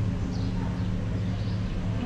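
Steady low hum of a running machine over an even background noise.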